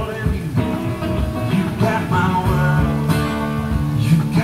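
Live band music: acoustic and electric guitars playing together, with a voice singing over them.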